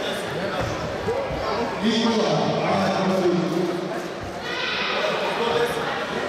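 People's voices talking in a large, echoing hall.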